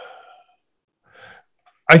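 A man's drawn-out hesitation sound, 'uh', trailing off, then a short pause with a faint breath before he starts to speak near the end.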